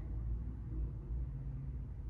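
Room tone: a low, steady hum with no distinct sound events.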